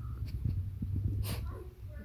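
Small white fluffy dog snuffling and nosing into a bed blanket close to the microphone, with muffled rustling and one sharp sniff a little past halfway.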